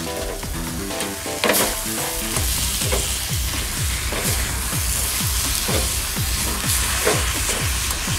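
A wooden spatula stirs and scrapes grated coconut around a stainless steel pot over heat, with a light sizzle as the coconut cooks. From about two and a half seconds in, the stirring settles into steady strokes of about two a second. Background music plays over the first two seconds.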